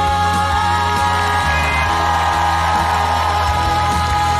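A young woman singing a Russian folk song in a powerful voice, holding one long high note that steps up about half a second in and eases back down near the end, over instrumental backing with a steady low bass.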